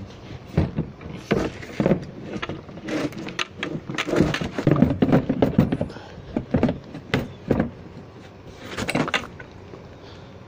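Cutting-board seat platform being handled and fitted into place under a kayak seat: an irregular string of knocks, thuds and scrapes.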